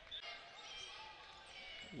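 Basketball being dribbled on a hardwood court, heard faintly over quiet gym ambience.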